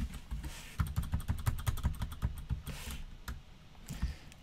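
Computer keyboard typing while code is edited: a fast, even run of key taps about a second in, with scattered single key presses around it.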